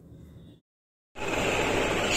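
A short dead gap, then a steady hiss with a low hum underneath: the background noise of a room recording, loud and even, with no voices.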